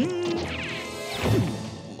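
Cartoon sound effects over background music: a quick upward pitch slide at the start that then holds a steady tone, followed a little past the middle by a long falling slide and a hit.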